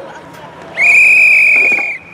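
Referee's pea whistle: one long, steady, shrill blast of a little over a second, starting about three-quarters of a second in and cutting off sharply. It stops play at a tackle.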